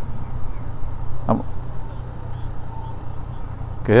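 Yamaha Tracer 900's three-cylinder engine running at low revs with a steady low hum as the motorcycle slows to a stop in traffic.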